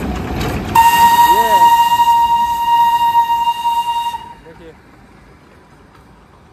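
Darjeeling Himalayan Railway steam locomotive's whistle blown in one long, steady blast of about three and a half seconds, starting just under a second in.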